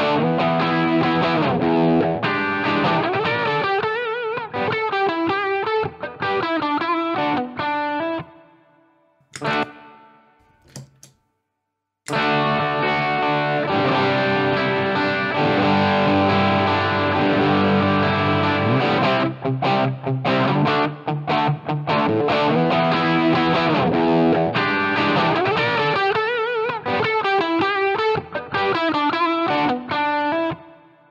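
Looped electric guitar part played through an Ibanez Tube Screamer Mini overdrive pedal with its tone turned fully down, giving a dark, low-gain overdriven sound. After a break of a few seconds, about a third of the way in, the same loop plays through a Digitech Bad Monkey overdrive with its high control fully down.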